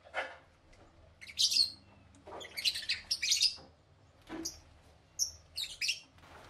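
Caged lovebirds chirping in short, high bursts, six or so times, with brief pauses between.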